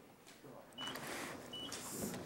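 Room noise of a meeting chamber filling with people: indistinct rustling and murmur that grows louder about a second in, with two short high electronic beeps.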